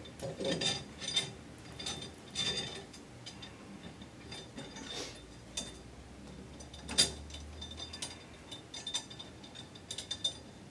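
Small metallic clicks and light scraping as a metal flange section is set down and worked onto the top of a glass column over its threaded rods, with one sharper click about seven seconds in.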